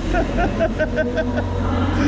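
Hitachi Azuma electric multiple-unit train creeping forward along the platform, a steady low hum from its traction equipment.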